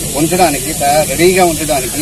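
A man speaking, over a steady high hiss.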